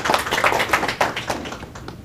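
A small audience applauding, with separate hand claps heard, dying away near the end.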